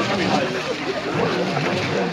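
Pack of foxhounds feeding on fresh rumen, a steady din of many overlapping growls and whines as the hounds jostle and tear at the meat.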